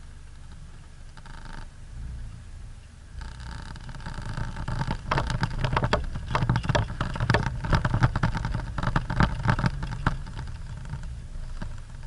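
Off-road 4x4 driving over a rough, rocky dirt track, heard from inside the cabin: a steady low engine and road rumble. From about four seconds in, the body adds dense knocks and rattles that ease off near the end.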